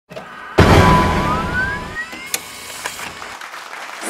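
Opening sound effect: a sudden loud hit about half a second in, with a tone that glides upward over the next second, then fading away, with a sharp click partway through.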